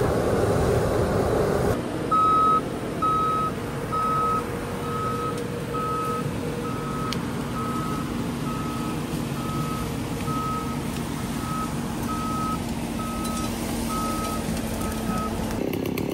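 Bobcat compact track loader's backup alarm beeping steadily, about three beeps every two seconds, over the loader's running engine. For the first couple of seconds the machine noise is louder and there is no beeping.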